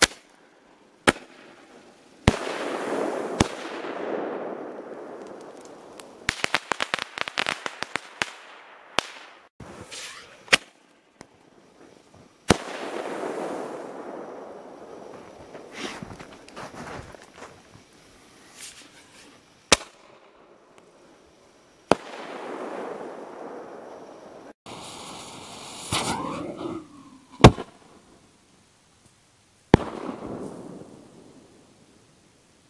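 Homemade 2.5-inch (63 mm) aerial star shells being fired: sharp mortar lift reports, each followed about two seconds later by the shell's burst and a rolling echo. About six seconds in comes a fast run of crackling pops, and the loudest bang falls near the end.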